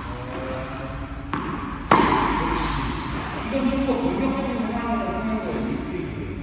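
A tennis ball bounces on the court, then about half a second later a racket strikes it hard with a sharp pop that rings around the large indoor hall.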